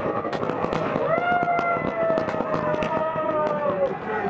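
A rapid, irregular string of firecrackers cracking during a football team's victory celebration, with a long held note, slightly falling in pitch, over it from about a second in until near the end.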